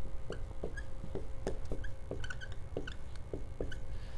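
Dry-erase marker writing on a whiteboard: a string of light taps with short, high squeaks as the letters are drawn.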